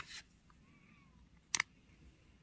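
Metal tweezers clicking and tapping on a plastic drawer lid as a sticker is set down. There is a click with a brief rustle at the start and a sharp double tap about one and a half seconds in.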